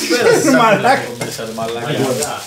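A plastic bag crinkling and rustling as it is pulled open, with a man's voice exclaiming over it during the first second.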